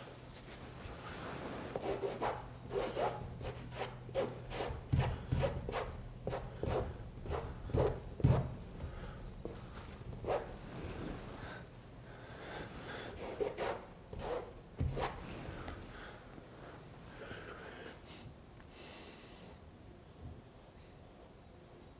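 Paintbrush scrubbing on a stretched canvas: a run of short scratchy strokes, about two a second, bunched through the first half and again briefly later. A faint steady hum lies underneath in the first half.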